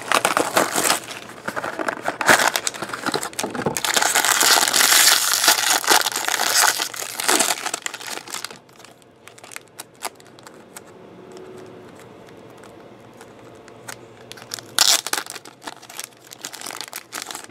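Plastic wrap and a foil pouch crinkling and tearing as a trading-card box is opened by hand. The sound is loudest in the first half, then gives way to quieter handling with small clicks, with a short burst of crinkling near the end.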